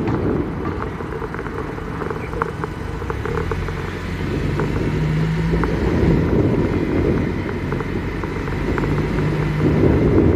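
A car driving on city streets: steady engine and tyre rumble with a low hum, and scattered faint ticks in the first half.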